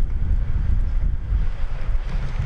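Wind buffeting the microphone: a loud, irregular low rumble.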